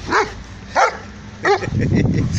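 German shepherd barking three times in quick succession, each bark short and loud.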